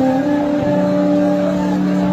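Live rock band holding a sustained chord between sung lines, a steady drone of several notes over a wash of stage and crowd noise.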